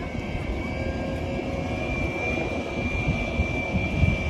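An aircraft engine running out of sight: a steady low drone with a high, thin whine held over it.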